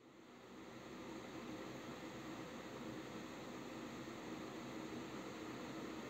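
A steady, low hiss-like noise fades in over the first second and then holds even throughout, with no distinct events.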